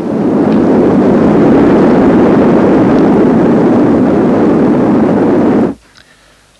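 Steady rushing roar of a volcanic eruption over the lava flow, with no distinct bangs, cutting off suddenly shortly before the end.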